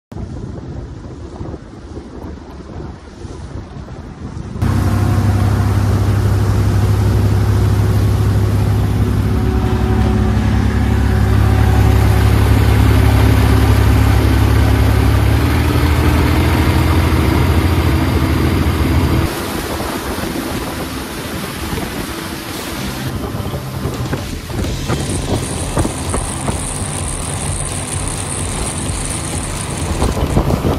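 A Yamaha UF-33 cruiser's Volvo Penta KAD43 diesel running at speed with a deep, steady drone, mixed with the rush of hull spray and wind on the microphone. The drone is loudest from about four seconds in and drops suddenly about two-thirds of the way through, leaving mostly water rush and wind. A thin high whine comes in near the end.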